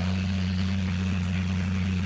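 A steady low hum with an even hiss behind it, unchanging throughout; no distinct handling or splashing sounds stand out.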